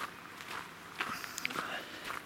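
Footsteps crunching on a gravel path, several uneven steps.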